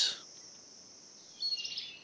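Quiet rainforest ambience, then a short run of high bird chirps about a second and a half in.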